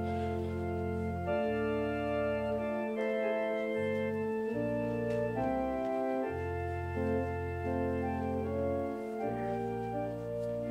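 Organ playing slow, held chords over sustained bass notes, the chords changing every second or two.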